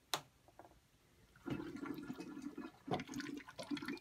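Water gurgling and bubbling through clear plastic tubing and aluminum water-cooling blocks, starting about a second and a half in, with a short click at the start and a knock about three seconds in.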